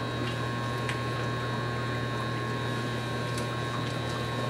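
Steady electrical hum with an even faint hiss and a couple of faint ticks, from running grow-room equipment.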